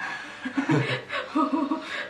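A man and a woman laughing together in a run of short chuckles, starting about half a second in.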